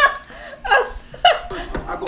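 A woman laughing loudly in a few short bursts, with the music paused.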